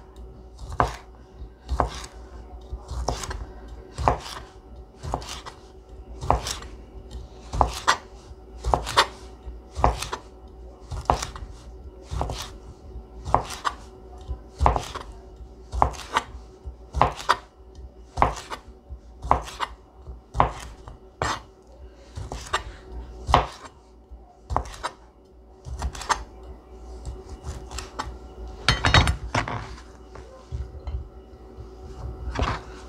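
A kitchen knife slicing a smoked sausage into rounds on a plastic cutting board, each cut ending in a sharp knock of the blade on the board, about one and a half a second in a steady rhythm. A few louder, quicker knocks come near the end.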